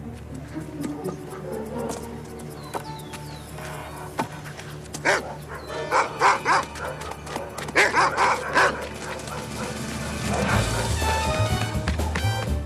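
Dogs barking in a run of short, loud barks from about five to nine seconds in, over background music.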